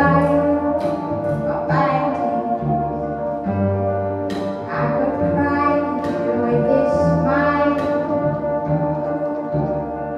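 Instrumental passage from a live trio of bassoon, cello and electric piano, with sustained wind and bowed notes over a slowly moving low bass line.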